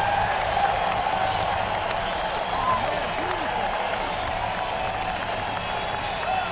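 Large arena crowd applauding and cheering after a song ends, a steady wash of clapping with scattered whoops and shouts.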